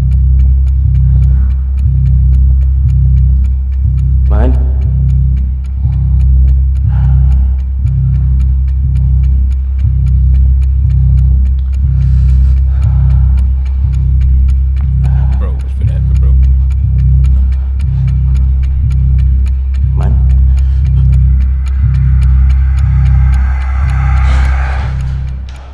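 Horror video game soundtrack: a loud, deep, pulsing drone with faint steady ticking on top and a few short sweeping whooshes.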